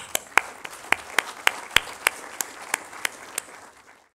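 Audience applauding, with one pair of hands clapping close to the microphone about three times a second over the softer clapping of the rest. The applause dies away near the end.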